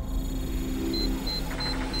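Computer-interface sound effect: a quick row of short, high electronic beeps, about three a second, starting about a second in, over a low, steady synthesised drone, with faint rapid ticking joining near the end.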